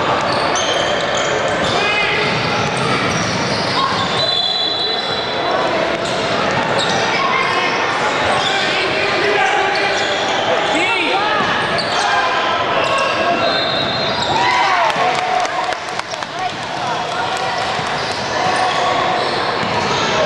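Youth basketball game in a reverberant gym: indistinct voices and shouting throughout, a basketball bouncing on the hardwood, and sneakers squeaking on the floor in short bursts several times.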